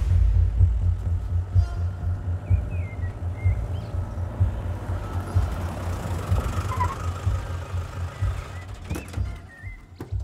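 A low, uneven rumble from an open-top jeep's engine as it drives up and stops, fading toward the end, under a film score. A few short bird chirps can be heard.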